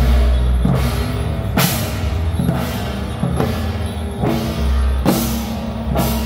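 Temple procession percussion: hand-carried drums and a hand-held gong beaten in a steady marching beat, with a loud, ringing stroke a little under once a second.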